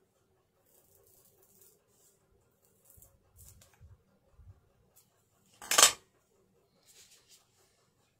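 Small scissors making a few soft snips through craft foam sheet, then one sharp, much louder clack about six seconds in.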